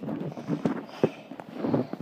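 Handling noise as a phone is moved about against clothing: rustling with a few sharp light knocks.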